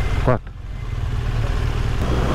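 BMW R1200RS motorcycle's boxer-twin engine running at low town speed, a steady low engine note that dips briefly about half a second in.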